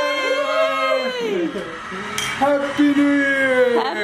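Several people shouting and cheering at once in long, drawn-out yells that rise and fall in pitch. One brief clink about halfway through.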